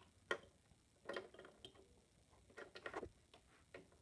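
A quiet room with a few sharp small clicks and taps at irregular moments: a single click early, then short clusters of clicks about a second in and again near three seconds.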